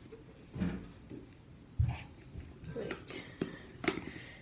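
Knocks and clicks of stirring a toothpaste-and-glue mix in a clear cup: a low thump about two seconds in, then a few short sharp clicks near the end.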